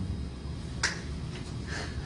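A single sharp click a little under a second in, followed by two fainter, softer noises.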